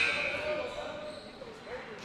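A referee's whistle blast that trails off about half a second in, followed by faint voices in the gym.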